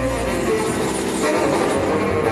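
Live jazz ensemble playing, with saxophone and trombone holding long chord tones over double bass.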